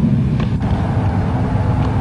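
A steady low rumble, with a faint brief sound about half a second in.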